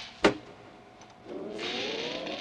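Horror film soundtrack: a sharp click near the start, then, after a quiet moment, a hissing rasp with a faint rising tone.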